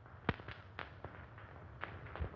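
Faint crackle and scattered sharp clicks over low hum and hiss, typical of the worn optical soundtrack of a 1930s film print. The loudest click comes about a third of a second in.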